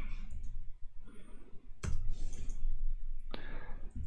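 Laptop keyboard keystrokes: two sharp clicks about a second and a half apart as the access key is entered at the terminal prompt, over a low room hum.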